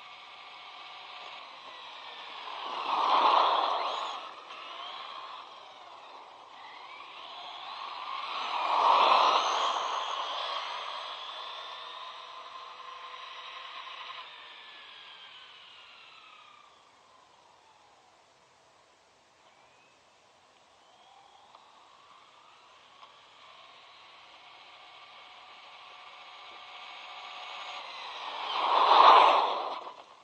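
ZD Racing Pirates 2 MT8 RC monster truck running flat out past the camera three times: a high motor and drivetrain whine that swells as it approaches and drops in pitch as it passes. The first two passes come a few seconds apart early on, then it fades to near quiet in the middle, and the last and loudest pass comes near the end.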